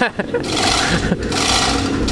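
Manual chain hoist being worked to lift a car engine, a continuous rasping rattle of chain starting about half a second in.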